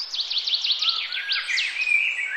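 Birds singing: one bird gives a fast run of high, downward-sliding notes, about ten a second, that stops shortly before the end, while other birds call at a lower pitch.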